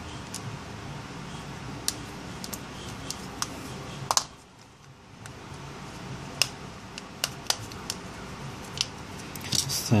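Sharp plastic clicks, about a dozen, coming irregularly as the plastic housing of a Samsung Galaxy S Advance (GT-I9070) smartphone is pressed together by hand and its clips snap into place.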